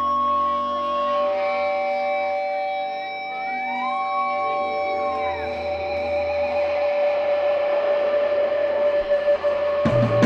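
Live indie rock song intro without drums: electric guitars and keyboard hold long sustained notes through effects, with slow swooping pitch bends and a wavering note, slowly growing louder.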